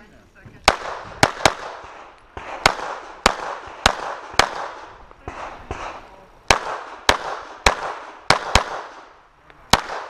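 Glock 19 9 mm pistol firing a string of about fifteen shots, singles and quick pairs about half a second apart, each crack followed by a fading echo.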